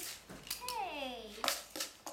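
A child's voice speaking, one drawn-out word sliding down in pitch, with a few sharp clicks in between.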